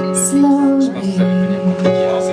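Instrumental opening of a live song on piano and violin: held notes under a low melody line that slides between pitches, before any singing.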